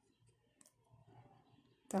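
A quiet pause in hand crochet work, with a faint single click about a third of the way in and soft handling noise from the crochet hook and cotton twine.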